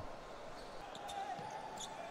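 Faint sounds of play on an indoor futsal court: a few short knocks of the ball and players' shoes on the wooden floor over a low hall background.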